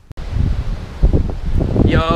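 Wind buffeting the microphone, a low rumbling that starts suddenly, with a man's voice beginning near the end.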